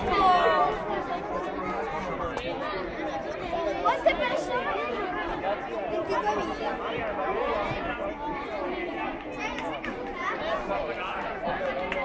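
A group of children chattering at once, many voices overlapping into a babble with no single clear speaker.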